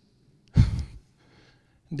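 A single short, loud breath out into a handheld microphone about half a second in, puffing on the mic.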